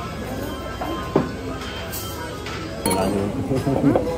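A single sharp clink of tableware about a second in, over restaurant background noise; voices start near the end.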